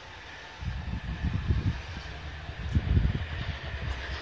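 Approaching train led by a 422-class diesel-electric locomotive, a low uneven rumble that grows louder about half a second in, mixed with wind buffeting the microphone.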